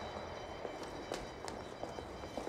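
Running footsteps on a concrete sidewalk, a few faint, irregularly spaced footfalls.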